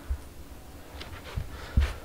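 Handling noise from a handheld camera and flashlight being moved about: a low rumble with a few small clicks and a short knock near the end.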